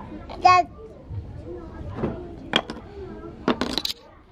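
A toddler's brief high-pitched vocal sound about half a second in, over the soft murmur of other children's voices, with a few sharp clacks near the end from the wooden toy being handled.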